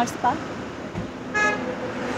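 A road vehicle's horn gives one short, steady toot a little past halfway through.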